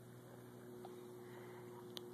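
Near silence: a faint steady hum and low background noise, with a small click near the end.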